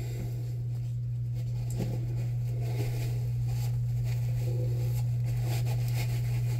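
A steady low hum, with faint soft rustling and light handling noise of a paper towel and latex gloves.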